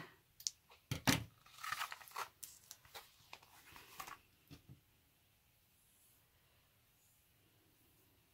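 A sharp scissor snip about a second in, cutting elastic cord, followed by a few seconds of rustling and light clicks as a craft-foam notebook cover is handled.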